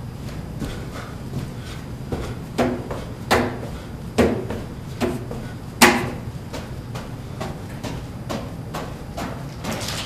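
Thuds of feet landing from a run of two-footed forward hops on a gym floor, strongest in the middle at under a second apart, the loudest about six seconds in. Then lighter, quicker landings from small bounces.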